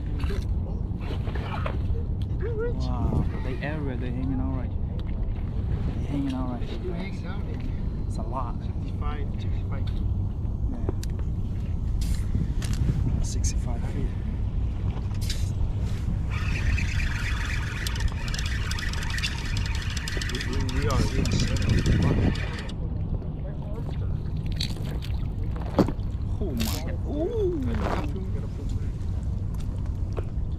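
Low, steady rumble of wind and water around a small inflatable boat, with people talking quietly over it. For about six seconds in the second half, a higher, steady whirring sound joins in.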